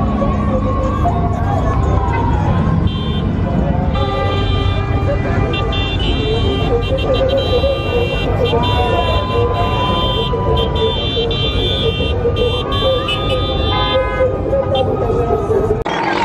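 Car engines rumbling in a crowded street car meet, with car horns blaring in long held blasts from a few seconds in until near the end, over people talking and shouting.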